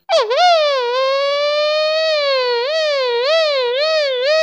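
Beatboxer's mouth-made imitation of an ambulance siren: one continuous pitched tone that dips at the start and rises slowly, then warbles up and down about twice a second from about halfway through.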